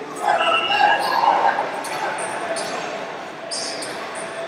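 People shouting during a wrestling bout, with long held yells in the first two seconds and shorter calls after, echoing in a large gym hall.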